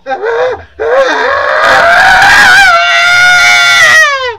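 A man screaming: a couple of short cries, then from about a second in one long, loud, held scream.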